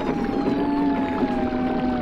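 Ambient electronic music: several sustained synthesizer tones drifting slowly down in pitch, with fainter sliding tones above them.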